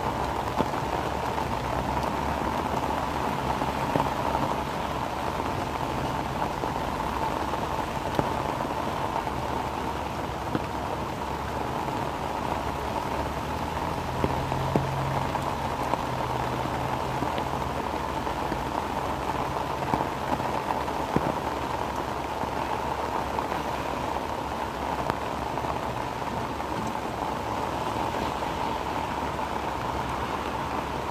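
Heavy rain falling steadily, with scattered sharp ticks of single drops standing out.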